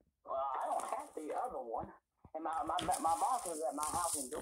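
Speech: a voice talking more quietly than the main speaker, with a short pause about two seconds in.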